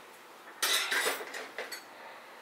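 Hand tools clattering as they are put back into a tool holder: a rattling clatter starting about half a second in, followed by a few light clicks.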